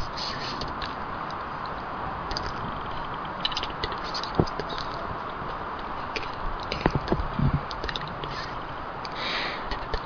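Trees creaking and scraping as their trunks and branches rub together, over a steady rustle of the canopy. A few short, sharp creaks stand out, most of them about two-thirds of the way through.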